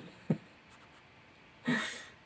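A man laughing briefly: one short laugh sound about a third of a second in, then a short breathy sound near the end.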